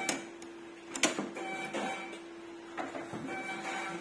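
Sharp mechanical clicks from a Diebold Nixdorf CS-280 ATM receipt printer mechanism being worked by hand during a lock and cutter-head adjustment, the loudest about a second in, over a steady hum that stops near the three-quarter mark.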